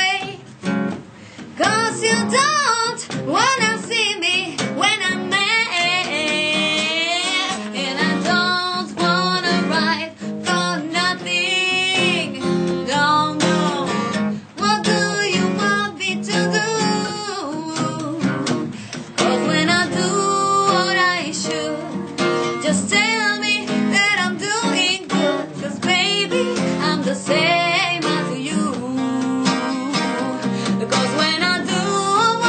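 A woman singing a blues song, accompanied by an acoustic guitar that is strummed and picked.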